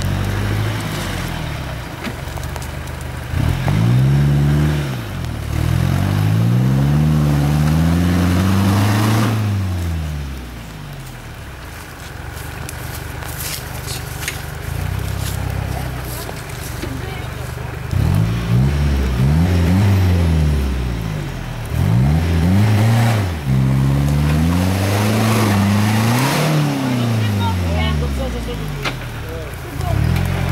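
Toyota 4x4 pickup's engine revved up and down again and again under load as it tries to climb a steep muddy step. The revving comes in two long spells with quieter running in between.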